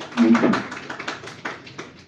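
Scattered handclapping from a small audience, irregular claps several a second, with a brief voice about a quarter second in.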